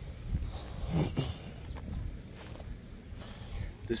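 Footsteps and rustling through tall grass and weeds, a few soft steps spread over the four seconds, over a steady low rumble.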